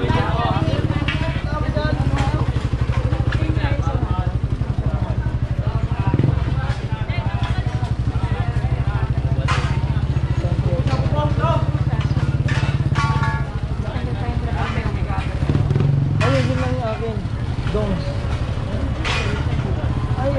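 A motorcycle engine running close by as a steady low drone, which drops away about two-thirds of the way through and comes back briefly, with people's voices around it.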